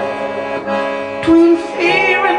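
Accordion playing sustained, drone-like chords, with a brighter single note held briefly a little past halfway.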